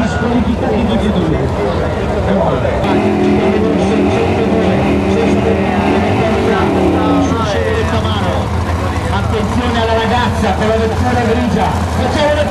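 Drag car's engine revving hard in a burnout, held at a steady high pitch for a few seconds and then dropping off about seven seconds in. A voice talks over it in the later part.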